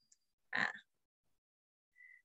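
A single brief 'ah' from a person's voice about half a second in; otherwise quiet.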